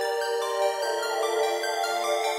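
Electronic dance-music remix in a build-up: sustained synth chords with no drums or bass, changing chord a little under a second in, over a faint rising sweep.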